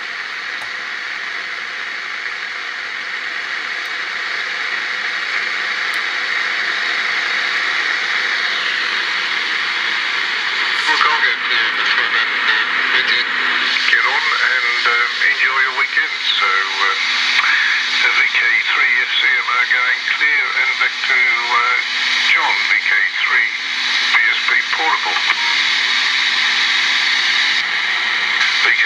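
AM car radio receiving 2-metre FM amateur traffic through a homebrew converter: a steady hiss through the speaker, slowly growing louder while the dial is retuned, then from about eleven seconds in a radio operator's voice comes through, an FM repeater signal made audible by slope detection, tuning off to the side of the signal.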